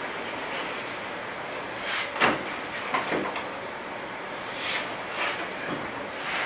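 Quiet meeting-room background: a steady low hiss broken by a few brief rustles and soft clicks, the loudest a little over two seconds in.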